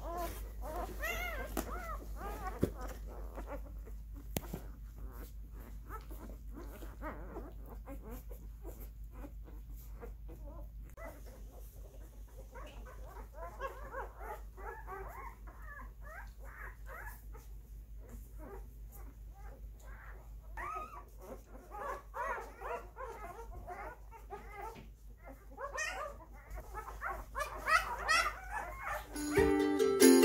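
Newborn husky-mix puppies squeaking and whimpering in many short calls that rise and fall in pitch, some in quick runs. Music starts right at the end.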